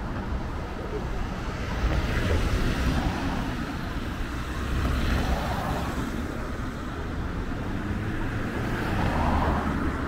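City street traffic, with cars driving past close by; the sound swells a few times as vehicles go past.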